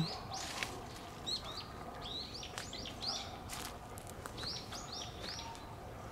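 Small birds chirping: short, high, arching chirps repeated many times over in quick runs, with a few soft clicks between them.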